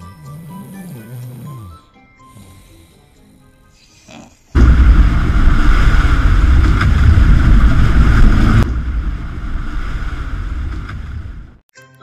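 Background music, then about four seconds in a loud rush of wind and churning sea water along a ferry's hull, with wind buffeting the microphone. It drops lower a few seconds later and cuts off just before the end, when the music returns.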